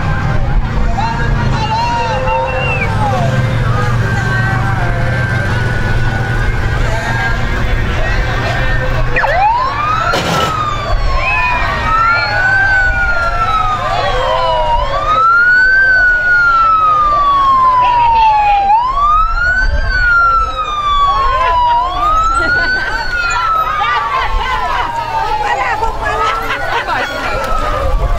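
Police car siren that starts about a third of the way in, a quick rise and slower fall in pitch repeating roughly every three seconds. Before it there are crowd voices and the low hum of a vehicle engine.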